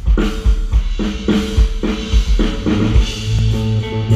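Live rock band playing an instrumental intro: drum kit beating steadily, about two to three hits a second, with electric guitar and bass guitar holding notes underneath.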